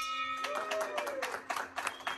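A large brass hand bell ringing out after being struck, its tone fading, while a few people clap unevenly.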